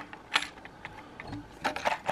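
A few sharp metallic clicks and clinks as a small folding utility knife and its keychain screwdriver are handled against their metal tin: one click about a third of a second in, then a quick run of clicks near the end.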